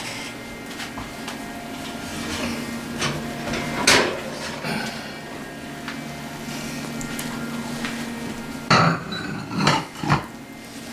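A ceramic baking dish is lifted out of a wall oven and set down on a kitchen countertop. There are knocks and clunks of dish and oven handling, a sharp knock about four seconds in and two louder clunks near the end, over a steady hum.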